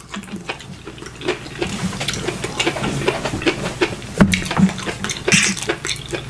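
Close-miked chewing and wet mouth sounds of a person eating, with irregular smacks and clicks. A sharper click comes about four seconds in.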